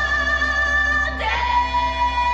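Song with a singer holding a long note, moving to a new, lower note a little over a second in. It is the accompaniment for a lyrical dance routine.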